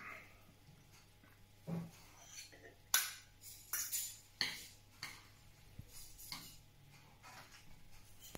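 Metal ladle and long fork clinking and scraping against a stainless steel frying pan as pasta is twisted up and plated: short scattered knocks and scrapes, the sharpest about three seconds in.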